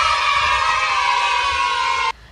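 An edited-in sound effect of a group of voices cheering, held as one long shout. It starts suddenly and cuts off abruptly about two seconds in.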